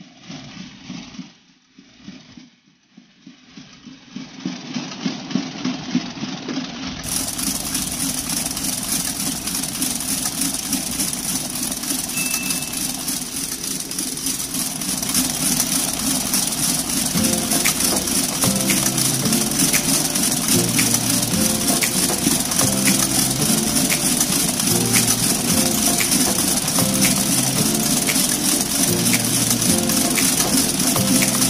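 Electric mixer motor running steadily as it beats cake batter in a metal bowl, starting a few seconds in. Background music with a steady beat comes in over it about halfway through.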